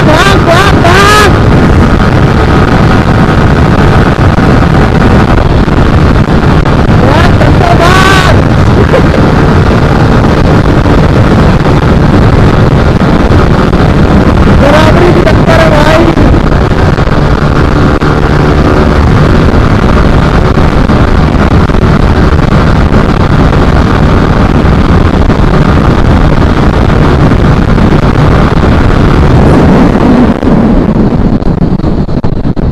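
Yamaha R15 V3's 155 cc single-cylinder engine held at high revs at high speed in fifth and then sixth gear during a flat-out race, with heavy wind rush on the microphone. Short wavering pitched sounds come through about 8 and 15 seconds in.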